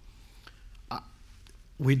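A pause in a man's speech: quiet room tone with a short, sharp click about a second in, then his voice resumes near the end.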